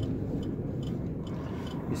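KAMAZ truck's diesel engine running low and steady, heard from inside the cab as the truck rolls slowly, with a few faint light ticks about two a second.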